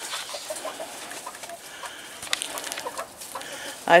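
Chickens clucking softly, a scatter of short low clucks.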